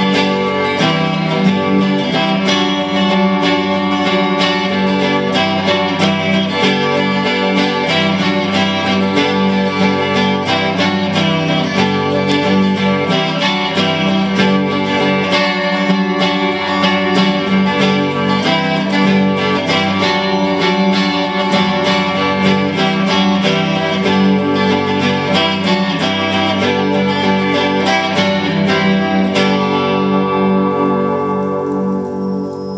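Electric guitar strummed and picked in a steady, unbroken instrumental passage.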